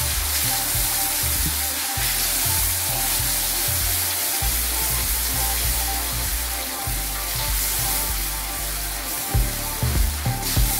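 Chikoo paste frying in ghee in a metal kadai, sizzling steadily as it is stirred with a wooden spatula and cooks down.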